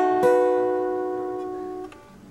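Steel-string acoustic guitar chord strummed twice in quick succession, the second stroke about a quarter second in, then ringing and slowly fading until it is damped just before the end. It is one of the seventh chords of a one-four-five progression in E.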